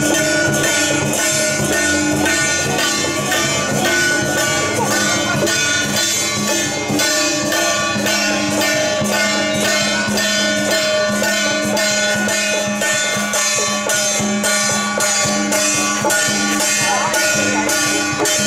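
Temple procession music: small hand-held metal percussion struck in a steady fast beat, under a sustained melody that shifts pitch now and then.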